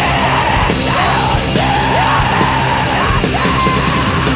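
Blackened punk song from a demo recording: distorted full-band music under a female singer's yelled vocals, with held notes in the middle and near the end.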